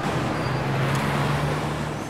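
Street traffic: a car passing close by, its engine and tyre noise swelling up and then fading away near the end, over a steady low hum.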